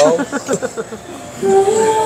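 Mostly a person's voice: speech trails off in the first half second, then a steady held voiced tone sounds near the end, running into laughter and talk.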